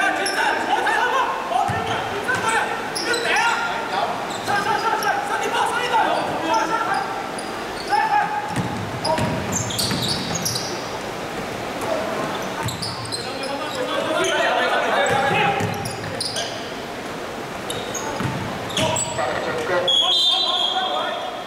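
A basketball bouncing on a hardwood court during play, with players' voices calling out. All of it rings in the echo of a large indoor sports hall.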